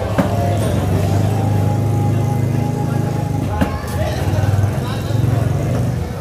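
Machete blade chopping through tuna into a wooden stump chopping block: two sharp knocks, one just after the start and one about three and a half seconds in, over a steady low motor hum.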